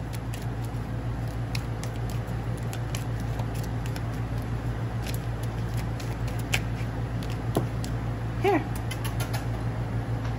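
A deck of tarot cards being shuffled by hand, with many scattered light clicks and taps as the cards slide and knock together, over a steady low hum. A brief pitched vocal sound comes near the end.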